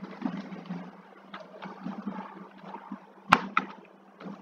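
Computer keyboard keystrokes, faint and scattered, with two sharper clicks close together a little after three seconds in, over a low steady hum.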